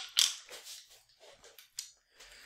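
Handling noise from two steel golf irons being turned and moved in the hands: a sharp click just after the start, a few softer ticks and rustles, and another sharp click near the end.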